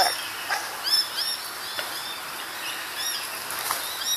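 Small birds chirping repeatedly in short, high, arched notes over a steady outdoor background, with a few faint clicks.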